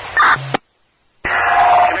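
Fire department radio scanner traffic: a transmission ends with a short electronic chirp and a brief squelch burst that cuts off abruptly, then after half a second of silence the next transmission keys up and a voice begins.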